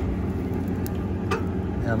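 Tractor engine idling steadily, with two short sharp clicks about a second in as hydraulic valve levers on the cultivator are turned by hand.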